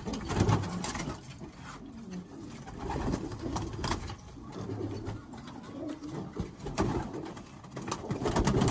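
Domestic pigeons cooing in low, intermittent phrases, with a few faint clicks.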